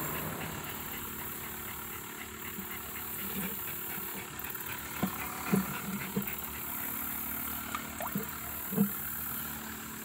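Small aerator pump humming steadily in a bait bucket of water, over a steady high buzz. Several short knocks and bumps between about five and nine seconds in, as the bucket and the fish in it are handled.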